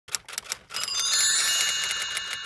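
Title-card sound effect: a run of quick ticks, then several high bell-like tones ringing together over the continuing ticks.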